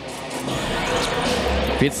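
Presentation sound effect for the fighter-introduction graphics: a hissing swell of noise that grows louder, with a deep bass boom about a second and a half in.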